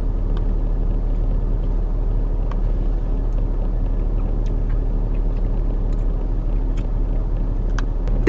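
Steady low rumble of a car's engine and cabin, heard from inside the car, with a few faint ticks.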